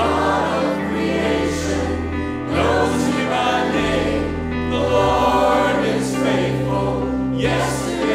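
A church choir and two lead singers singing a contemporary worship song together, over sustained low accompaniment notes that change pitch every couple of seconds.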